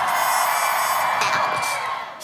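K-pop dance track at a break: the bass drops out and a wash of synth and noise fills the gap in the beat.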